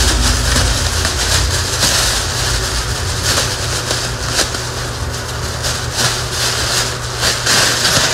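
Close-up ASMR rustling and crackling of hands and crinkly white material worked right against the microphone, with a steady low rumble from the handling.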